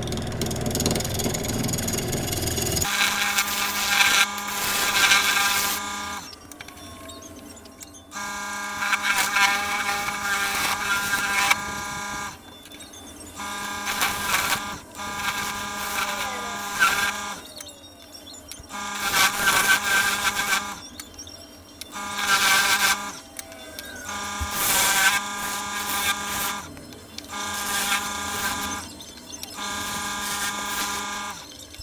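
Wood lathe running with a turning tool cutting into the spinning sycamore box base, in repeated cuts of a second or two with short pauses between them, over a steady motor hum. The tool is cutting the lip on the base that the lid fits onto.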